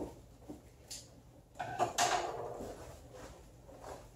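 Cardboard box and its plastic wrapping being handled and opened by hand: a few short scrapes and knocks, the sharpest about halfway through.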